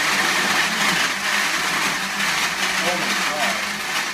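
Countertop blender running loudly and steadily.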